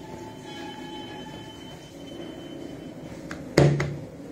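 Cloth being handled on a table over a steady low hum with faint high whine tones; one loud thump about three and a half seconds in, a hand coming down flat on the table.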